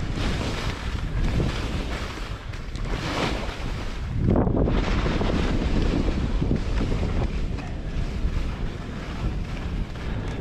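Wind rushing over a skier's camera microphone while skiing, with skis scraping and swishing over chopped-up snow through turns; the noise swells a few times, most strongly about four to five seconds in.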